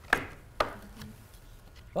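Two sharp knocks about half a second apart as handheld paddle signs are picked up and bumped against a glass tabletop.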